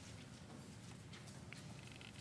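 Near silence: faint room tone with a few scattered soft ticks and rustles.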